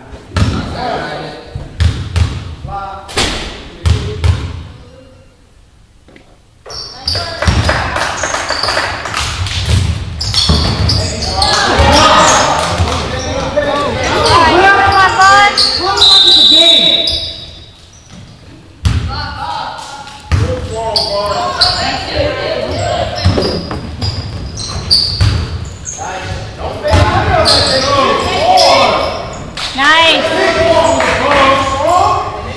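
Basketball bouncing on a gym floor: a few dribbles at the start, then, after a brief lull, repeated bounces amid shouting from players and spectators, all echoing in a large gym.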